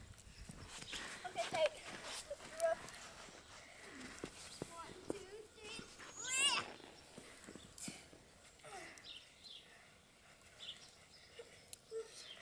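Faint, scattered high-pitched children's voices, short calls rather than clear words, the clearest about six and a half seconds in, with a few soft knocks in between.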